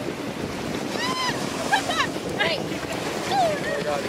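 Wind buffeting the microphone over lapping surf, with a few short, high-pitched voice calls rising and falling from about a second in.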